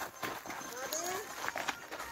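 Footsteps of several people walking on a dry dirt path through dry grass, a string of irregular short crunching steps.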